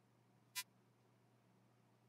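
Near silence with a faint steady low hum, broken about half a second in by a single short, sharp computer mouse click.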